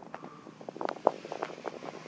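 Irregular light clicks and rustling from a handheld camera being moved around inside a car: handling and clothing noise close to the microphone.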